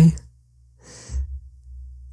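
A man's breathy sigh, a long exhale about a second in, with some low rumble of breath on the microphone.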